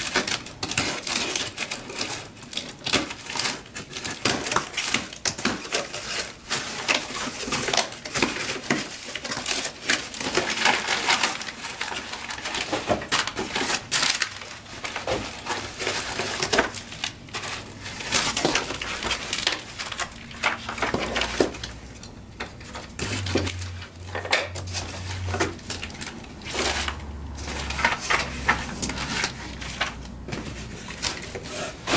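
Cardboard shipping box being opened and unpacked by hand: a continuous run of rustling and crinkling with many small clicks and knocks as box flaps, paper and plastic-wrapped tools are handled and set down on a table.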